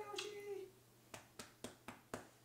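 A brief high-pitched voice sound, then four sharp clicks in quick succession, about four a second.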